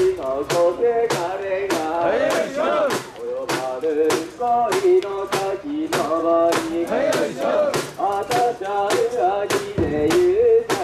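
A group of mikoshi bearers chanting in unison while carrying and bouncing a portable shrine, with sharp clacks falling in rhythm about twice a second.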